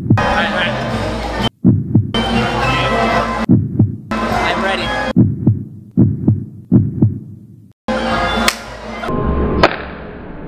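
A heartbeat sound effect: deep thumps in quick pairs, repeating evenly, with the sound cutting abruptly to silence a few times. Busy crowd and voice sound drops in and out between the beats.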